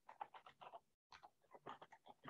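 Faint, choppy, garbled audio from a video-call participant's microphone. Short speech-like fragments keep breaking off into dead silence, like a voice cutting in and out over a faulty microphone or connection.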